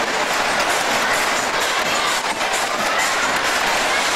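Steady rushing roar from a car of a Music Express ride spinning at speed around its hilly circular track: the car rumbling along the rails and wind buffeting the microphone.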